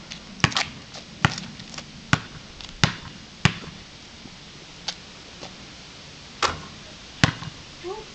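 A basketball bouncing on a concrete court as it is dribbled. There are about six sharp bounces, one every two-thirds of a second or so, over the first three and a half seconds, then a lull, then two more bounces about a second apart near the end.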